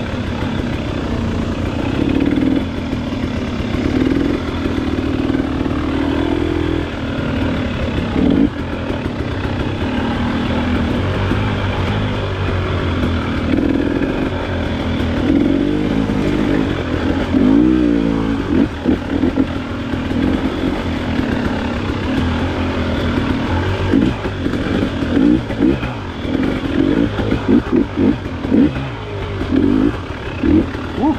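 Two-stroke engine of a 2022 KTM 300 XC-W enduro motorcycle being ridden, the revs rising and falling with the throttle. Near the end the throttle is blipped on and off in quick short stabs.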